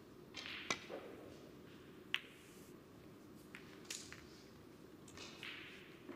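Snooker cue tip striking the cue ball with a sharp click, then about a second and a half later a second sharp click as the cue ball strikes another ball, followed by a few fainter clicks.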